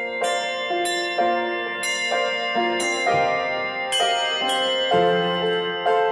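Brass handbells ringing out a hymn tune, one struck note after another, roughly every half second to second, each bell ringing on under the next.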